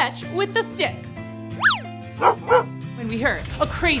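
Cartoon dog yapping a few short times over background music, with a quick whistle that rises and falls about halfway through. A low rumble begins near the end, the loud sound that grows into the cyclone.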